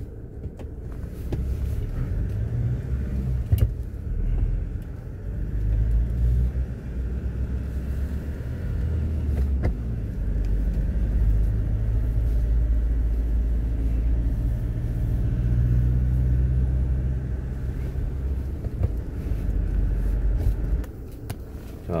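A car driving along a narrow road: a steady low engine and road rumble that rises and falls a little, with a sharp knock at about three and a half seconds and another at about ten.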